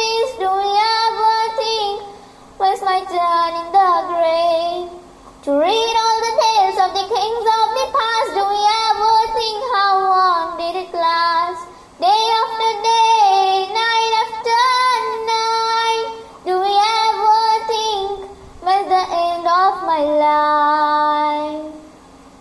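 A girl singing an Islamic devotional song (nasheed) solo, in flowing phrases with bending pitch and short breaths between them. The last note is held steady near the end.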